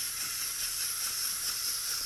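Wind-up clockwork gear motor of a Zoids Command Wolf model kit running as the model walks, a steady high whirring hiss.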